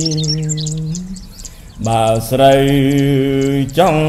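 A Buddhist monk chanting Khmer smot, a solo voice holding long notes with a slow waver. The first phrase fades out about a second in and a new one begins near the halfway mark. Birds chirp in the background, clearest in the gap between phrases.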